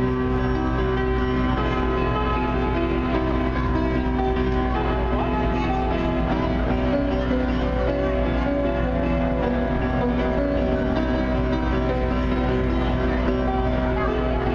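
Keyboard organ played in dense, sustained clusters of overlapping held notes, at a steady loud level throughout. The piece is meant to capture the sound of thousands of snow geese beating their wings.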